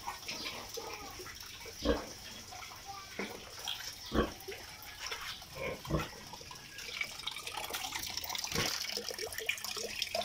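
A sow grunting a few times, about two seconds apart, over the steady rush of running water.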